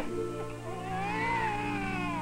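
A baby crying: one long wavering wail that starts about half a second in and trails downward near the end, over background music with sustained low notes.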